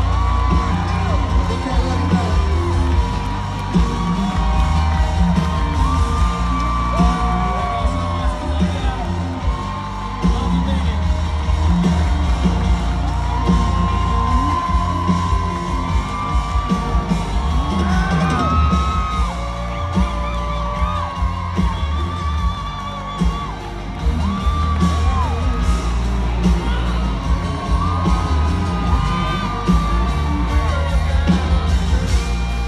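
A live country band plays a song with a strong bass beat while a large concert crowd sings the chorus, with whoops and yells from the audience.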